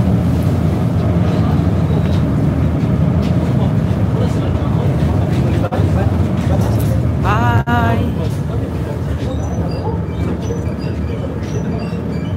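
Steady low rumble of a passenger ferry's engines under way. A person's voice calls out briefly about seven seconds in.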